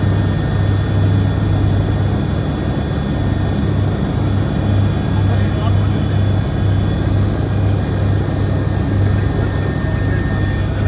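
Steady engine noise heard inside a small aircraft's cabin: a loud low hum that swells about twice a second, with a few high steady whining tones above it.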